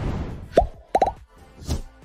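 Cartoon pop sound effects from an animated 'like' button, over background music. A whoosh swells at the start, a single pop comes about half a second in, a quick run of pops follows a second in, and a second whoosh comes near the end.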